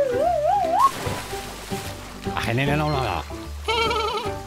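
Cartoon soundtrack: background music with wordless vocal exclamations from the characters. A wavering tone rises over the first second, and a quivering cry comes near the end.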